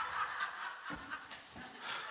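Soft, quiet laughter, well below the level of the preaching around it.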